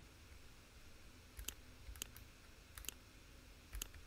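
A few faint computer mouse clicks, some in quick pairs, spread about half a second to a second apart.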